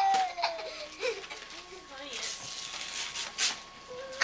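Small children's voices: one gliding down in pitch at the start, then babbling and laughter, over the crinkle and tearing of wrapping paper.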